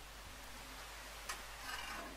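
Low background noise with a single faint click about a second in and a brief faint rustle near the end, from hand tools being handled.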